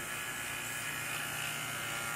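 Three-CFM two-stage Pittsburgh rotary-vane vacuum pump running with a steady electric whir. It is pulling vacuum on a catch jar whose vent hole is being covered, so the suction shifts to the hose in the liquid.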